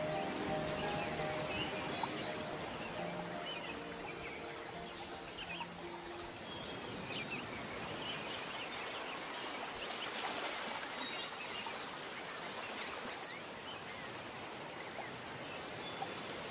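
Many birds chirping over a steady background of noise, a nature ambience recording, while soft instrumental music fades out over the first few seconds.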